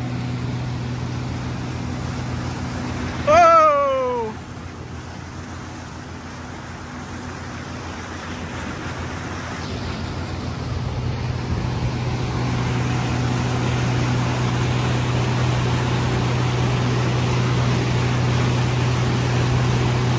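Mercury outboard motor running steadily under way, a low hum under the rush of wake water and wind. About three seconds in a person lets out a short falling exclamation, and the noise grows gradually louder through the second half.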